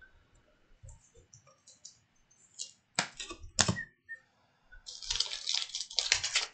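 Trading cards being handled in clear plastic sleeves and a rigid top loader: small scattered clicks, two sharp clicks about three seconds in, then a run of crackling plastic rustle near the end.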